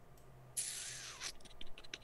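A soft hiss lasting under a second, then a quick run of light clicks.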